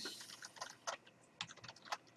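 Computer keyboard keys clicking faintly as a phrase is typed: about ten quick, irregularly spaced keystrokes.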